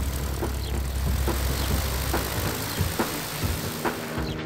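Piston engine and propeller of a single-engine light aircraft on its takeoff run and climb-out: a steady, full-range engine noise with a heavy low rumble that eases off about two and a half seconds in.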